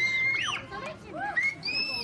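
Several children's high-pitched voices shouting and squealing over one another, loudest at the start and again near the end.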